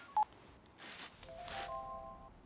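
Mobile phone keypad beeps as a number is dialled: short single tones of differing pitch. A little over a second in, a steady chord of several held tones begins.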